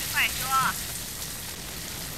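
Fire burning in a room, a steady crackling hiss. A man gives a short, high, falling cry near the start.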